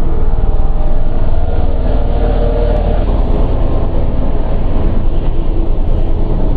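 Dark industrial electronic drone music: a loud, dense, low rumbling drone, with a brighter swell in the middle range about two to three seconds in.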